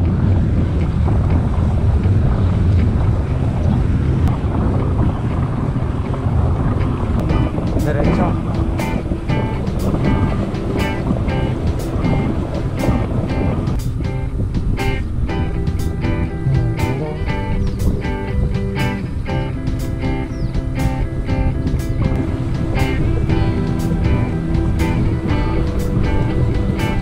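Wind rushing over the microphone of a moving bicycle, under background music. The music's steady beat comes in about a quarter of the way through, and held musical notes join about halfway.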